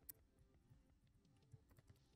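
Faint typing on a computer keyboard: scattered single keystrokes, a few slightly louder ones near the end.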